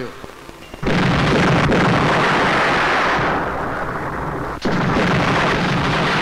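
Two bomb blasts in a film soundtrack: the first goes off about a second in, the second a little past four and a half seconds. Each sets off a long, heavy rumble that carries on after the bang.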